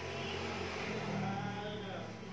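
Faint sound from a television playing across the room: a low steady hum with distant, indistinct voices.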